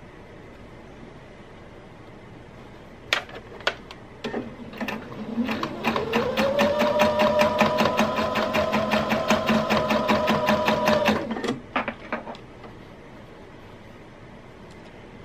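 Domestic electric sewing machine stitching through layered dress and bra fabric. A few clicks come first; about four seconds in the motor starts, its whine rising as it speeds up to a steady run with rapid, regular needle strokes, then it stops about eleven seconds in, followed by a few light clicks.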